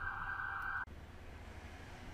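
A short burst of hiss-like noise, under a second long and cut off sharply, as the recording cuts in, followed by faint room tone with a low mains hum.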